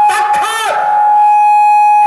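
Folk song music: a voice slides through ornamented phrases, then a long steady high note is held to the end.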